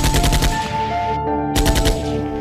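Bursts of rapid automatic machine-gun fire, about twelve shots a second, used as a sound effect over a synth music outro: one burst ends about half a second in, another starts about a second and a half in, with held synth notes underneath.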